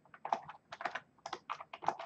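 Typing on a computer keyboard: a quick, uneven run of about ten keystrokes.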